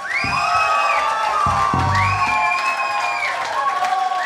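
Live electropop band playing the close of a song: long tones that glide up and down over a few deep drum hits, with a crowd cheering.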